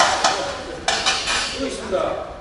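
A long metal utensil clanking against a stainless steel brew kettle, twice: once at the start and again about a second in, each knock followed by a short metallic ring.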